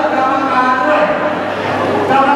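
A man's voice amplified through a microphone, speaking loudly with long drawn-out vowels.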